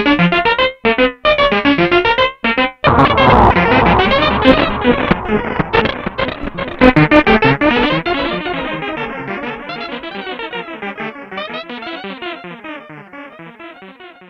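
PAiA Fatman analog synthesizer sounding through a 1982 Powertran digital delay line: short separate notes at first, then from about three seconds in the delay repeats pile up into a dense wash of echoing notes. The pitch of the echoes warbles as the delay's knobs are turned, and the whole wash fades away slowly over the last several seconds.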